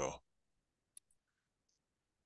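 A faint short click about halfway through, from operating the computer, in otherwise near silence; the tail of a spoken word at the very start.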